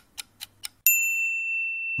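Countdown-timer sound effect: clock-like ticking at about four ticks a second, which stops and is followed near the one-second mark by a single bright bell ding that rings on, signalling that time is up.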